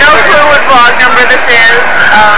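Speech only: a woman talking close to the microphone.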